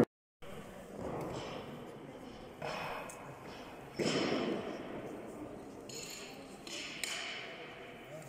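Indistinct voices and a few sudden knocks echoing in a large gym hall, each fading away.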